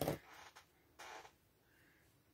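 Paper and card pieces being handled and pressed against a tabletop: a short rustle right at the start, a fainter scraping after it, and another brief rustle about a second in.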